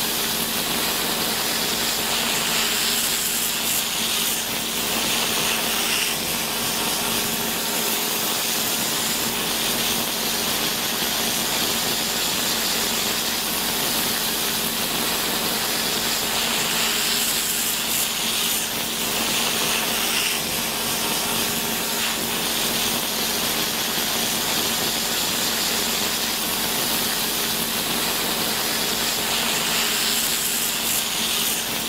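Electric podiatry nail drill running steadily as its burr grinds down a fungal toenail, a continuous hiss over a steady hum, brightening at times as the burr presses on the nail.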